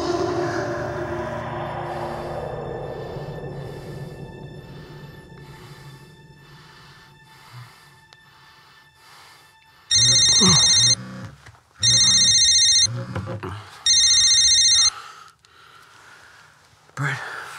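Film score music fading away over the first several seconds, then a mobile phone ringing: three loud electronic rings, each about a second long and about two seconds apart.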